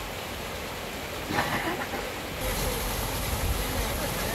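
Water rushing over a rocky stream bed. About halfway through it gives way to the louder gush of mineral spring water spouting up from a pipe into a stone basin, with a low rumble under it.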